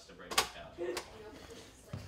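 A steel door's push-bar latch clacks sharply about half a second in as the door is shoved open, with a second, lighter click about a second in.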